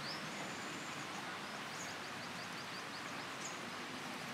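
Outdoor ambience: a steady background hiss with faint, high bird chirps, including a quick run of about six short chirps through the middle.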